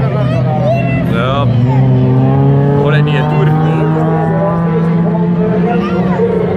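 Autocross race car engines running on a dirt track, one steady engine note rising slowly in pitch as a car accelerates, with voices breaking in near the start and about three seconds in.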